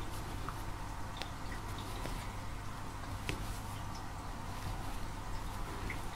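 Quiet room with a steady low hum and a few faint clicks from a steel crochet hook and fingers working fine crochet thread.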